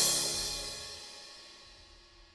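Background drama score ending on a cymbal crash that rings out and fades away steadily over about two seconds.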